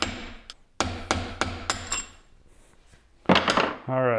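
A small hammer tapping on a flathead screwdriver that is driving the little top cover off a Harley Sportster 39mm fork leg clamped in a vise: a quick series of metal-on-metal taps, about three a second, with a light ringing, for roughly the first two seconds. A louder, brief noise follows near the end.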